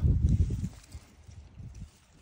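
Low rumbling handling noise on the microphone as the camera is moved about, loud for the first half-second or so, then dropping to faint low knocks.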